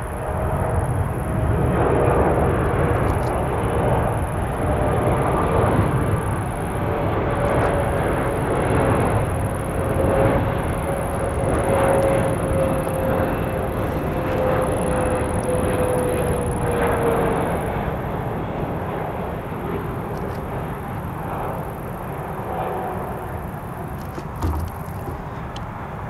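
Boeing 777 Freighter's twin GE90 turbofans at approach power as it passes low on final with landing gear down: a loud, steady jet rumble with a whine that drops in pitch about two-thirds of the way through, after which the sound slowly fades.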